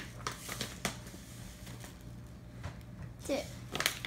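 Plastic pouch of chia seeds crinkling and rustling as it is tipped over a blender jar, with a few sharp clicks, over a low steady hum.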